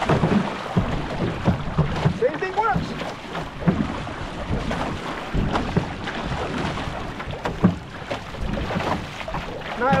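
Dragon boat paddle strokes splashing and water rushing along a one-person outrigger canoe's hull, with irregular low thumps and wind buffeting the microphone.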